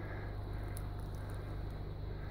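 Faint steady low hum under quiet outdoor background noise, with a couple of faint ticks and no distinct event.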